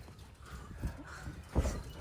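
A few soft, dull knocks and scuffs of wrestlers moving on the ring and its ropes, the loudest about a second and a half in.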